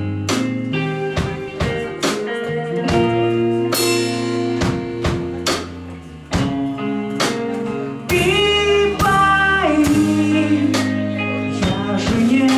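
Live rock band playing an instrumental passage: strummed Fender electric guitar, bass guitar and a steady drum beat. About eight seconds in, the music gets louder and a sustained, sliding melodic line comes in over the top.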